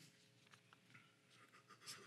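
Near silence with a few faint, short paper rustles and small ticks, the clearest near the end: the pages of a Bible being handled.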